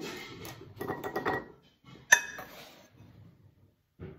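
A scoop scraping and rustling through powdered soup mix in a glass mixing bowl, with one sharp, ringing clink against the glass about two seconds in.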